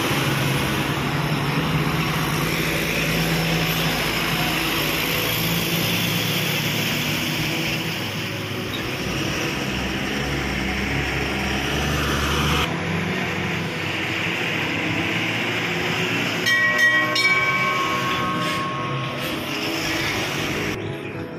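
Steady heavy-vehicle engine and road noise with a low drone, which drops out abruptly about thirteen seconds in. A horn sounds briefly, with some clatter, about three-quarters of the way through.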